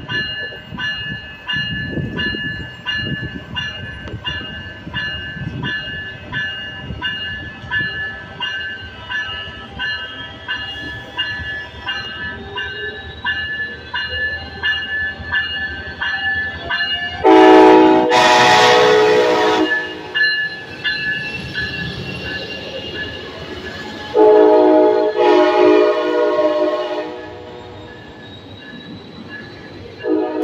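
A Coaster commuter train's Siemens Charger diesel locomotive pulling into a station, with its engine rumbling and a warning bell ringing about twice a second. About halfway through the horn sounds one long, loud blast, then a second long blast a few seconds later, and a short horn note starts right at the end.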